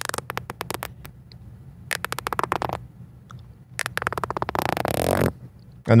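Beatbox lip roll done three times: lips pursed to one side and the jaw dropped, with air siphoned through the lips so they vibrate in a rapid run of pops. The third roll, starting near the fourth second, is the longest, about a second and a half, and the pops run together into a buzz.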